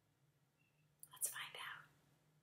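A short, breathy whisper, a little under a second long, about a second in, with a hissing sound at its start.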